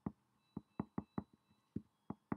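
Pen tip tapping and clicking on paper over a hard desk while printing capital letters: about seven sharp, irregular taps in two seconds, one for each stroke.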